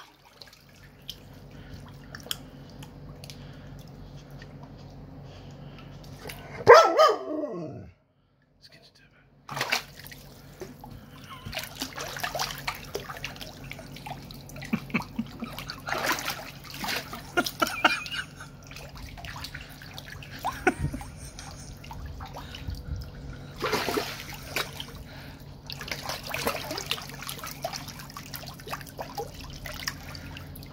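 A dog splashing and pawing in a tub of water, trying to reach a toy sunk on the bottom, with irregular sloshes and drips from about ten seconds in. About seven seconds in there is one loud cry that falls steeply in pitch. A steady low hum runs underneath.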